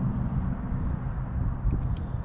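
Steady low rumble with a few faint, small clicks near the end as an LED bulb is slid and pressed into a plastic interior light housing.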